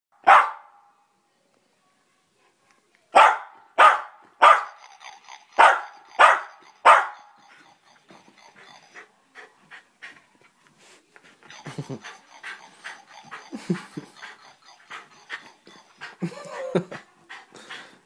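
A small terrier barking: seven loud, sharp barks spread over the first seven seconds. After that come quieter, irregular scuffling and chewing noises as it tears at a toy.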